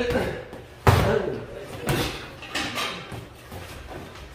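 Boxing gloves landing on gloves and headgear in close-range sparring: a quick series of four or five sharp thuds, the loudest about a second in.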